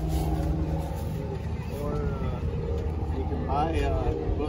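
Steady low hum of an idling car engine, with brief faint voices twice.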